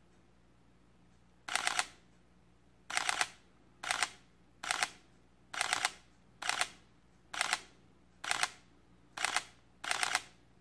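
Sony A7R III shutter firing in short high-speed continuous bursts, each of three or four rapid frames, about ten bursts roughly a second apart, starting about a second and a half in.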